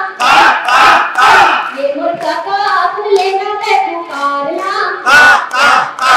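A woman singing a song into a microphone through a PA, her melody running on between loud bursts of crowd voices: three in the first second and a half and two near the end.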